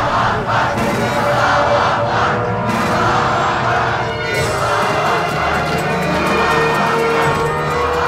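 A large crowd of protesters shouting together, with film music playing under it; the music grows stronger from about halfway through.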